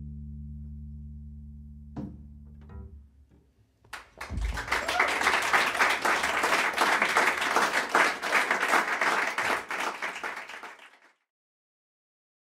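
A low double bass note rings out and fades, stopped with a click about two seconds in. After a short pause, audience applause starts and carries on for about seven seconds before cutting off suddenly.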